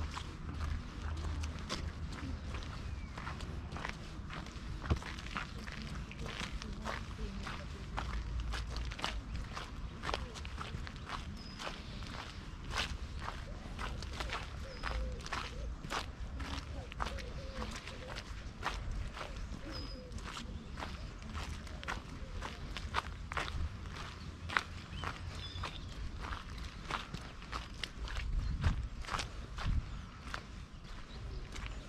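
Footsteps of a person walking steadily along a gravel and muddy path, about two steps a second, over a low, uneven rumble.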